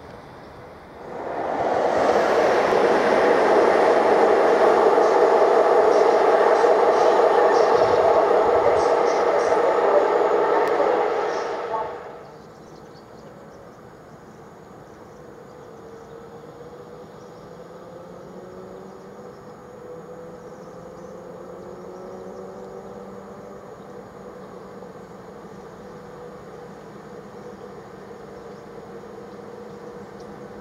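An electric multiple-unit train passes close by with a loud, steady rush of wheels and running gear from about a second in, cutting off abruptly around the twelfth second. Then comes a quieter stretch with faint rising and falling whines as a ČD InterPanter electric unit pulls into the platform.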